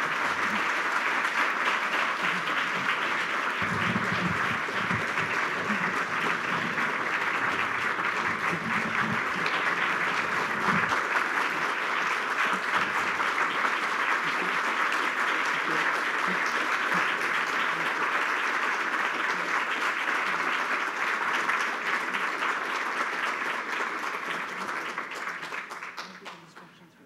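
A large audience applauding in steady, dense clapping that goes on at length and dies away near the end.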